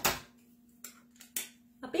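Parts of a three-in-one burger press clicking as the small slider insert is taken out of its lid: one sharp click at the start, then a few lighter clicks and taps.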